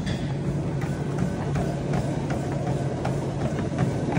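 Treadmill running with a steady motor hum and belt noise, with regular footfalls on the belt about two to three times a second as someone walks on it.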